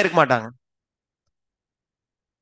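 A man speaking through a headset microphone, breaking off about half a second in, then dead silence.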